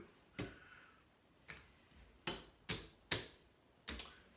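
Casino chips clicking against each other as they are picked up off the felt craps layout. About six sharp, irregularly spaced clacks, the loudest in the second half: the losing place bets being cleared after a seven-out.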